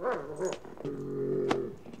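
A large dog vocalizing: a short call at the start, then a low, steady, drawn-out sound lasting about a second, with a sharp click in the middle.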